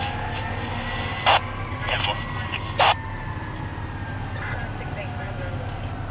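Federal Q2B mechanical fire-truck siren winding down, its pitch falling slowly over several seconds, heard at a distance over a steady low hum. Three short loud bursts cut in during the first three seconds.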